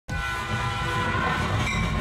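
Steam locomotive whistle sound effect: a chord of several steady tones that starts abruptly and holds for about a second and a half, over the pulsing low chuff of the engine.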